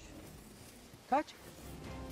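A quiet pause with a faint low background hum, broken about a second in by one short spoken word.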